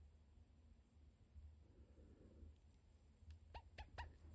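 Near silence: faint room tone with a low hum, and a few faint short ticks near the end.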